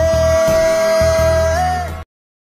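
Hindi song: one long held vocal note over a steady bass accompaniment. The note lifts slightly near the end, then the music cuts off suddenly.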